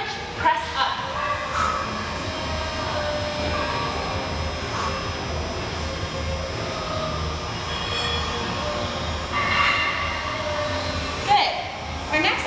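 A steady low rumble, with faint voice-like sounds near the start and again about ten seconds in.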